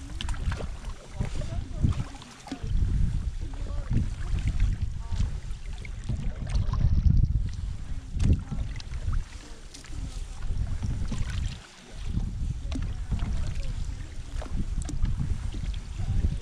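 Water rushing and lapping against a moving canoe close to the microphone, with uneven wind rumble on the microphone that dips briefly a few times.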